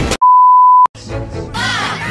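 A steady 1 kHz test-tone beep from TV colour bars, held for about two-thirds of a second and cut off sharply. Music begins about a second in.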